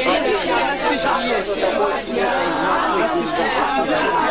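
Several people talking at once, their voices overlapping into steady chatter.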